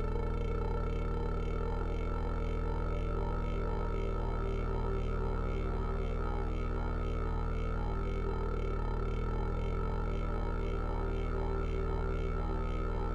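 Analog synthesizer drone: a deep sustained tone holding steady, with a regular pulsing, repeating pattern in the higher tones layered over it.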